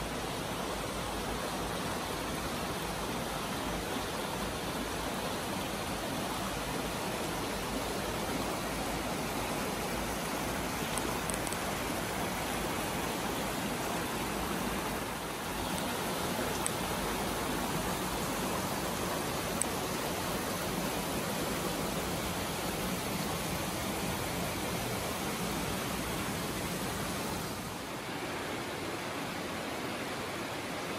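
A brook rushing steadily over rocks and small cascades, an even, unbroken noise that dips briefly twice.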